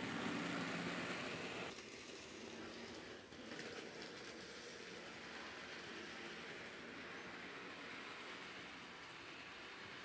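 N scale Bachmann Thomas model locomotive and cars running along the track, a faint steady whir of the small motor and wheels. It is loudest as the train passes close by in the first couple of seconds, then drops suddenly to a lower, steady level.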